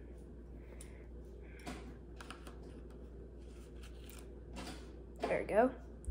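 Light scattered clicks and taps of chopsticks picking at gummy candy sushi in a plastic tray, over a faint low steady hum. A short vocal sound near the end.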